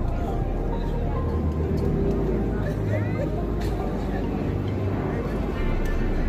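Indistinct voices of players and spectators at a youth football game over a steady low rumble, with no single loud event.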